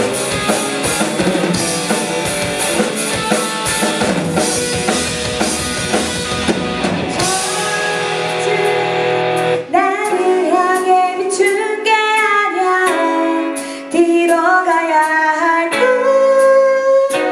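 Live rock band: a woman singing over electric guitars, bass and a drum kit. About eight to ten seconds in, the low end drops away and the song thins to singing over sparser guitar notes.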